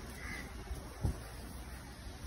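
Quiet outdoor background with a single short, faint bird call early on and a low thump about a second in.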